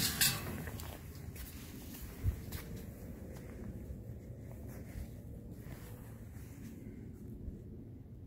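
Footsteps and handling noise from a handheld camera as the person walks, over a steady low rumble, with one louder thump about two seconds in and a faint steady hum.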